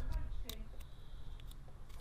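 A few small clicks and handling noises of a plastic wiring connector being pushed together as the motor brake's lead is plugged in.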